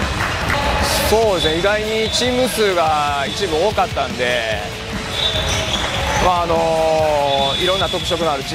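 Basketball dribbled and bouncing on a gym's wooden floor during practice play, with a few sharp knocks.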